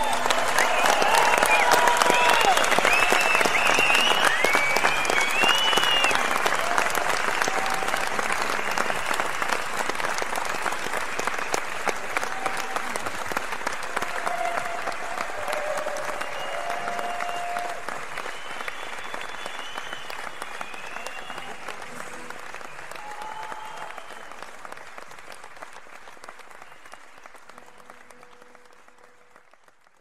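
A large concert audience applauding and cheering, with whistles over the clapping in the first few seconds. The applause dies away gradually in a long fade.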